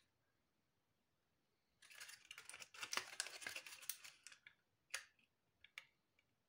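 Faint crinkling and clicking of handled PET bottle plastic and a ribbon-wrapped wire stem. It starts about two seconds in, lasts about two and a half seconds, and is followed by one sharp click near five seconds and a couple of small ticks.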